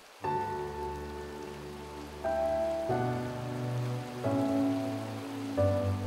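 Background music: a slow series of sustained chords, each held for one to two seconds before the next, over a steady hiss.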